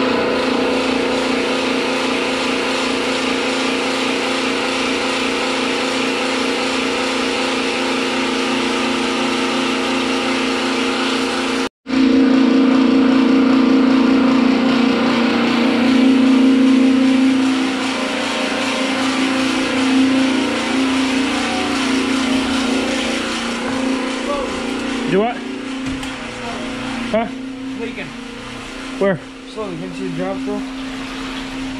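Small electric transfer pump motor running with a steady, constant hum as it pumps apple cider vinegar through a hose, with liquid running into a tub under it. The sound breaks off for a moment about twelve seconds in and returns louder, and a few short squeaky glides come near the end.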